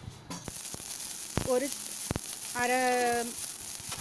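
Chopped small onions and curry leaves dropped into hot oil in a stainless steel pan. The oil starts sizzling all at once, about a third of a second in, and keeps sizzling with a few sharp pops.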